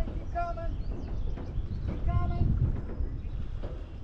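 A few short, pitched animal calls, each lasting a fraction of a second, over a steady low rumble.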